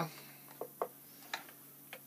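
A few light, separate clicks and taps, about four in two seconds, as anodized parts on a wire hanger are handled against the dye-bath container, over a faint steady hum.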